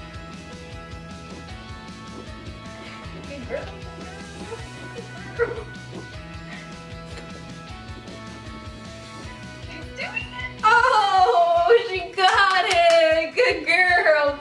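Background music for about ten seconds, then a small dog whining loudly in a run of high, sliding cries.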